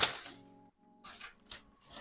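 Tissue paper rustling sharply at the start as it is pulled from a cardboard box, then a quiet stretch of faint, soft held music tones with a couple of light paper rustles.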